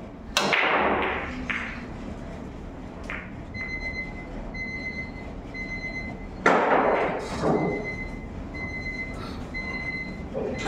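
Pool break shot: the cue ball cracks into the racked balls about a third of a second in, followed by the balls clattering and rolling across the table. A second loud sharp knock comes about six and a half seconds in, and a faint, high, on-and-off tone sounds through the middle.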